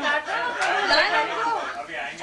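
Chatter of several voices talking over one another.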